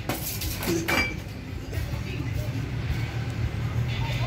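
A few sharp knocks and clinks at the start and about a second in, as a ball is kicked across a tiled patio among ceramic plant pots, over a steady low hum.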